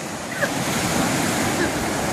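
Rough sea surf breaking and washing on the shore, a steady rushing hiss.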